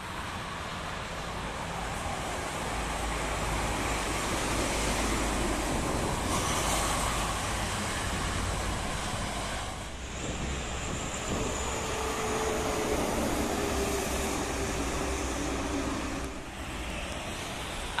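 Multi-lane toll-road traffic: trucks and buses going by in a steady rush of tyre and engine noise that swells as vehicles pass, twice. A faint steady droning tone comes in past the middle and lasts a few seconds.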